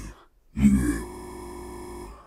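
A recorded voice sample is cut off by an FFT spectral freeze. A brief vocal sound about half a second in is caught and held as a steady, unchanging buzzy tone for about a second: the last analysis frame repeated.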